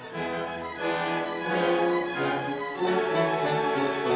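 Orchestral music with strings and brass, playing sustained chords that move on every second or so.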